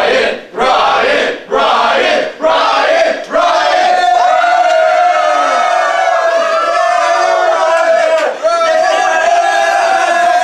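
A group of students shouting in unison in a rhythmic chant, about one shout a second, then breaking into continuous cheering and yelling about three seconds in, with one steady held note through the din.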